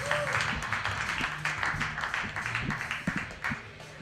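Audience applauding over walk-on music with a steady low bass line. The clapping thins out slightly near the end.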